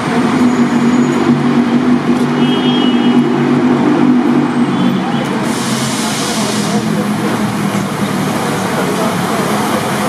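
Busy street traffic: a motor vehicle's engine hums steadily, with people's voices mixed in, and a brief hiss about halfway through.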